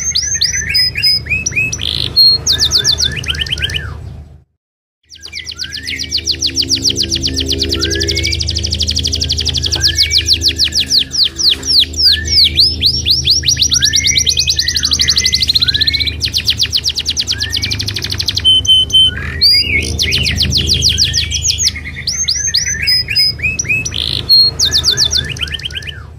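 Domestic canary singing a long, loud song of fast trills and chirps, strings of quickly repeated sweeping notes, with a short break about four and a half seconds in. A steady low hum runs underneath.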